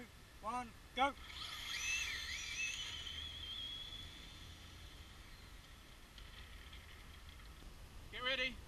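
Electric RC drag car's motor whining high as it accelerates down the track, starting about a second and a half in and fading away by about the middle. Before it, a few short, pitched calls that rise and fall.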